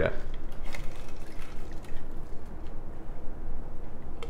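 A shaken margarita being double-strained from a metal shaker tin through a Hawthorne strainer and a fine-mesh strainer into a cocktail glass: a faint, steady trickle of liquid with a few light clicks.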